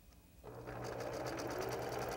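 Electric sewing machine starting up about half a second in and then running steadily at speed, the needle stitching a seam through a quilted block in a fast, even rattle over a low motor hum.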